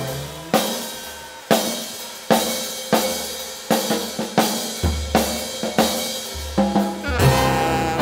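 Live jazz drum kit playing a break, with snare, bass drum and cymbal hits at uneven intervals over upright bass and piano. The horns come back in near the end.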